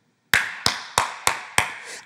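A run of sharp percussive hits in an even rhythm, about three a second, starting a third of a second in, each dying away quickly.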